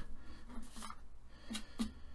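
Sheet of printer paper, folded into a paper airplane, rustling and sliding on a cutting mat as it is flipped over and turned, with a few soft taps about half a second in and again near the end.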